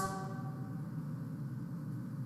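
The last chord of a recorded a cappella choir chant dies away at the very start, leaving a faint, steady low hum and hiss.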